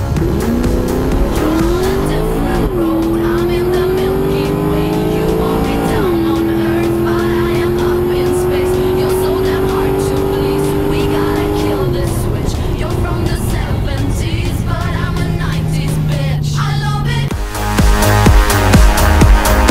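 Holden Special Vehicles V8 at full throttle on a drag-strip run, heard from inside the car: the revs climb from the launch, drop at an upshift about three seconds in and again about six seconds in, then pull steadily until the throttle is lifted about twelve seconds in and the engine falls to a lower drone as the car slows. Music comes up loud near the end.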